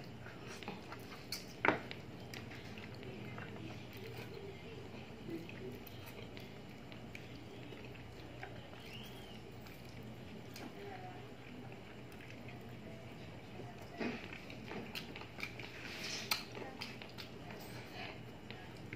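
Close-up eating sounds of a man chewing and sucking on spicy chicken feet adobo with rice, eaten by hand: soft wet smacks and small clicks, with one sharp click about two seconds in and a busier run of smacks and clicks near the end.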